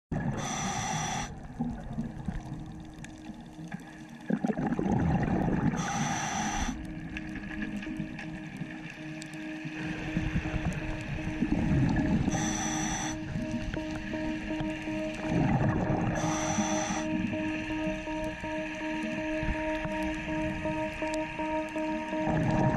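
Scuba diver breathing underwater through a regulator. Each breath is a rumble of exhaled bubbles followed by a short hiss as the diver inhales, repeating about every five to six seconds. Steady held tones of background music come in about halfway through.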